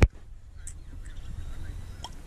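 Cork popping out of a bottle of sparkling drink: one sharp pop right at the start, followed by a quiet stretch with a low wind rumble on the microphone.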